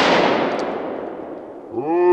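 The fading tail of a .22 Long Rifle shot from a Ruger LCR revolver. It is loud at first and dies away steadily over about a second and a half as a rush of noise. A man's voice starts near the end.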